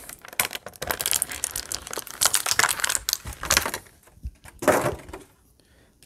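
Crinkling plastic packaging and quick clicks of hard plastic as a small toy gun accessory is worked free by hand, with a louder rustle about a second before the end.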